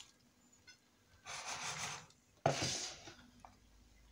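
Two short rubbing, scraping noises, the second starting more sharply, from a hand moving wet sliced potatoes in a glass baking dish.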